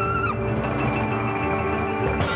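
Small jazz group playing live: piano, upright bass and drums under the sustained notes of the lead instruments. A held high melody note bends down and stops about a third of a second in.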